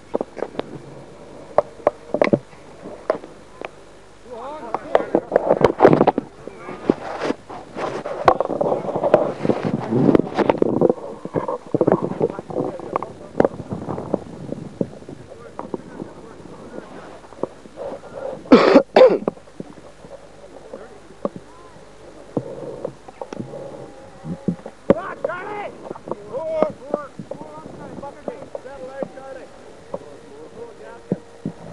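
Indistinct voices talking and calling, loudest in the first half, with scattered short clicks and one loud, short vocal burst a little past the middle.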